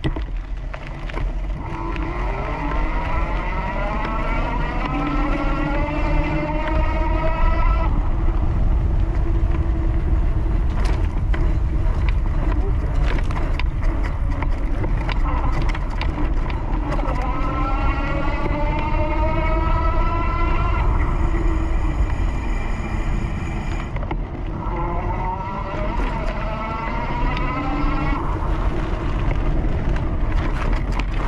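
Bafang 750 W rear hub motor whining under level-five pedal assist, the whine rising in pitch three times as the bike speeds up and then holding. Underneath runs a steady low rumble of the fat tyres rolling and wind on the microphone.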